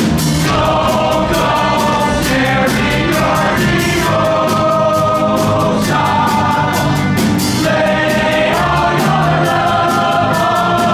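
A chorus of voices singing together in long held notes over a live pit band, from a stage musical.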